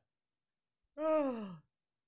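A man's sigh, falling steadily in pitch and lasting about half a second, after a second of dead silence: an exasperated reaction to a bad pun.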